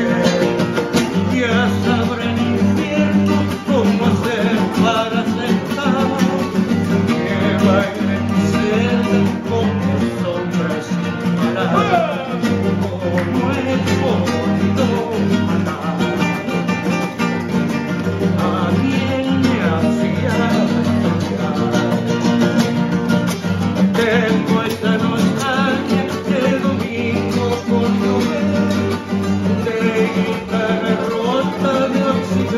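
Two acoustic guitars strumming and picking a Latin American song while a man sings.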